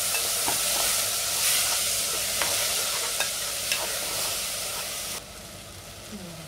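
Broken wheat frying with cashews and raisins in a pressure cooker pan, sizzling steadily while a slotted steel spoon stirs and scrapes through it, with light clicks of the spoon against the pan. The sizzle drops away suddenly near the end.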